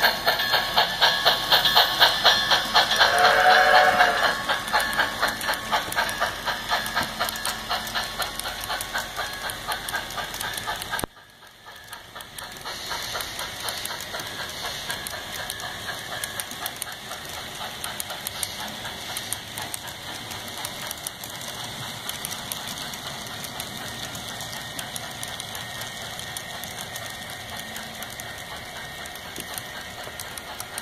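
Model steam locomotive of a Southern Pacific Mt-4 playing sound: rhythmic chuffing, with a whistle blast about three seconds in. About eleven seconds in the sound drops suddenly, leaving a quieter, steady rhythmic clatter of freight cars rolling along the track.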